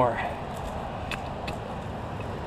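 Gloved hands pulling apart and crumbling a root-bound shrub root ball, the roots and loose compost rustling with a few faint crackles, over steady outdoor background noise.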